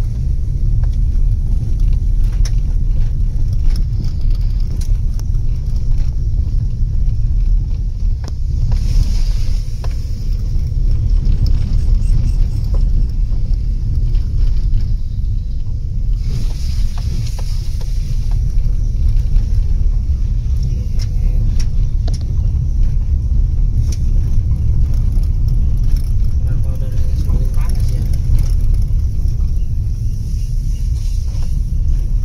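Low, steady rumble of a car's engine and tyres heard from inside the cabin as it drives slowly along a rough dirt track, with scattered light knocks from the bumpy ground.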